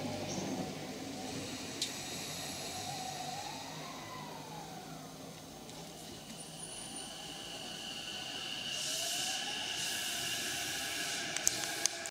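JR E233-series electric commuter train pulling out of the station, its motor drive whining in tones that glide up and down in pitch as it gets under way, with a hiss of air and a few sharp clicks near the end.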